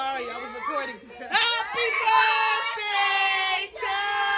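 Several people's voices at once, singing and shouting, with long held notes from about halfway through.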